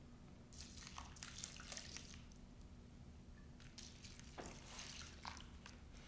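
Water poured from a plastic pitcher onto dirt, sand and rocks in a plastic tray, heard as a faint splashing trickle. It comes in two spells, about half a second in and again from about four seconds in.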